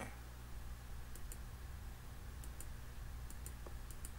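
Faint computer mouse clicks, a few pairs about a second apart, over a low steady hum.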